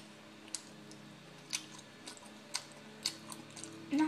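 A few faint, sharp clicks, about one a second, of a metal fork or spoon tapping and scraping a bowl of macaroni and cheese as a bite is taken.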